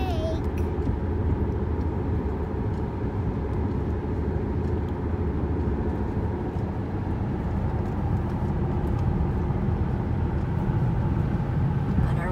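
Steady low road and engine noise heard from inside the cabin of a car driving along a highway.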